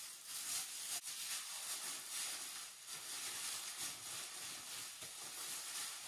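A plastic shopping bag crinkling and rustling as it is handled and adjusted over wet hair, an uneven, faint crackle that comes and goes.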